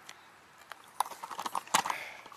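Irregular short clicks and knocks starting about a second in and bunching together toward the end: handling noise as the camera is picked up and moved.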